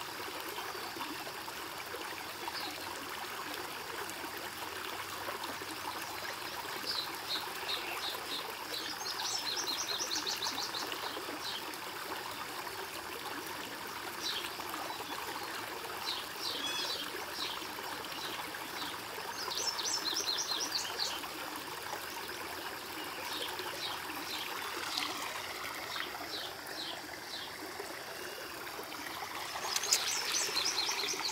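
Creek water running steadily, with a songbird singing short phrases of rapid high notes every few seconds.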